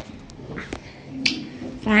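Two sharp clicks about half a second apart in the first second, then soft voices, and a person's voice starting loudly just before the end.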